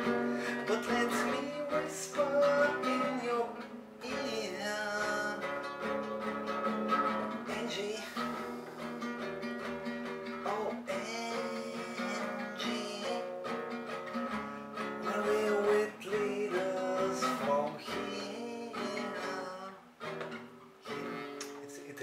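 Acoustic guitar strummed in chords.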